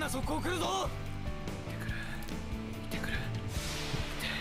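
Anime episode audio playing in the background: a character's voice calls out in the first second over steady background music, which carries on to the end.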